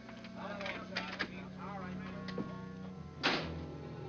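Faint background voices of a busy room, then about three seconds in a film-score music cue comes in with low sustained notes and one sharp, loud hit.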